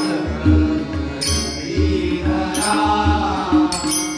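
Men singing a devotional chant, accompanied by tabla and mridangam drumming in a steady rhythm, with deep bass-drum strokes under a sustained drone.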